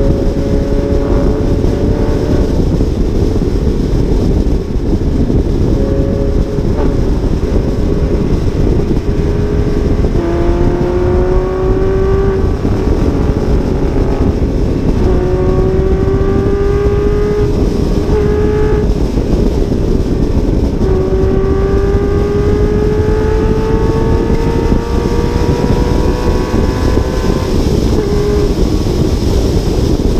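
Heavy wind rush on a hood-mounted camera at freeway speed. Under it, the Audi R8's engine note rises slowly in pitch three times in the second half as the car pulls ahead in gear.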